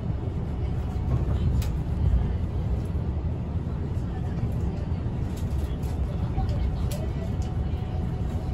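Steady low hum inside a limited-express train carriage standing at the platform before departure, with a few faint clicks.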